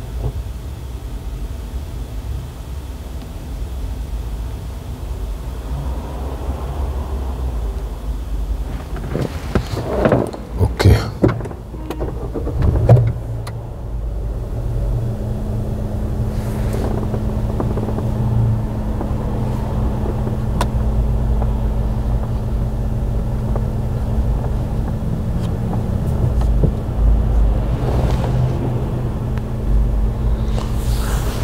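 Inside a parked car: a steady low rumble, with a few knocks and rustles about ten to thirteen seconds in, then a steady low hum that comes in about fifteen seconds in and holds.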